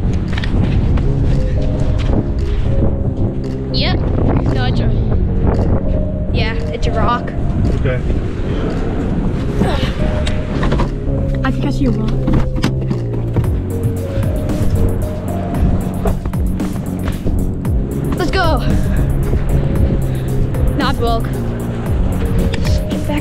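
Background music with held chords that change every second or two.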